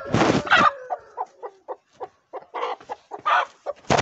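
A hen squawking and clucking as she is chased to be caught: a long call falling in pitch about half a second in, then a run of short clucks, with a louder squawk near the end.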